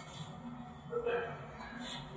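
Pause in a man's lecture: faint room tone, one short vocal sound about a second in, and a breath near the end.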